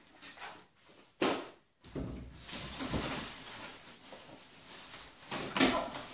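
Rustling and handling noises as packaging and a fabric dust bag are pulled out of a cardboard box, with a sharp knock about a second in and a louder brief rustle near the end.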